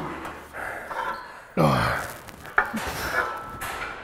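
A weightlifter breathing hard after a set on a chest press machine, with one loud voiced exhale about one and a half seconds in that falls in pitch.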